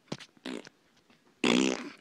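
A person blowing a short, buzzy raspberry with the lips and tongue near the end, after a few faint short mouth sounds.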